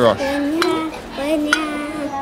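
A voice singing long held notes, with a single light click of a knife against a china plate about one and a half seconds in.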